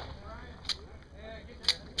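Gunfire at a pistol match: a few sharp shots at uneven intervals, about a second or less apart. None are fired by the shooter on camera.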